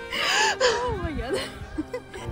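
A woman's breathy gasp followed by a short, wordless laugh, her voice sliding down in pitch.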